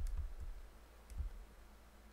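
A few faint clicks of a computer mouse, the first and sharpest right at the start, over a low steady hum.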